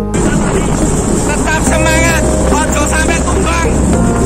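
Road and vehicle noise with wind on the microphone, and people's voices calling out over it, all above faint background music.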